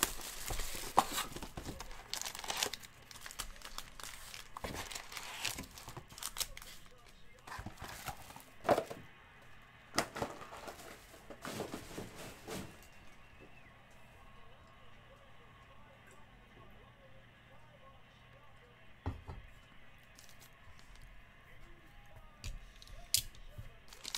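Plastic shrink-wrap being torn off a trading-card box and crumpled, a run of crinkling and tearing through roughly the first half. After that, quieter handling with a single knock and a few light clicks near the end.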